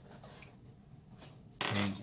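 A few faint clinks of a measuring spoon as a tablespoon of sugar is tipped into a bowl, then a man says "okay" near the end.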